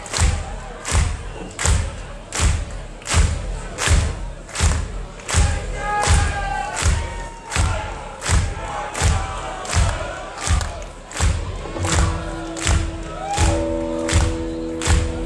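A live band's bass drum keeps a steady beat, about four beats every three seconds, as a song opens. The crowd shouts about six seconds in, and a held chord comes in near the end.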